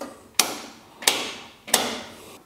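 Mode selector switch on a Hammer B3 Winner combination saw-spindle moulder being turned through its positions. It makes three sharp clicks about two-thirds of a second apart, each with a short ringing tail.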